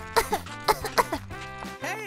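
Light background music with a few short coughs from a woman's voice, a doll character starting to catch a cold in the chill of the air conditioner.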